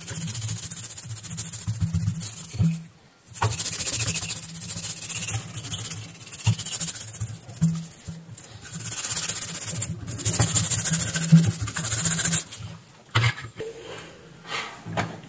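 Toothbrush bristles scrubbing a circuit board wet with isopropyl alcohol: a fast, scratchy brushing with short breaks about 3 seconds and 10 seconds in. It stops about a second before the end.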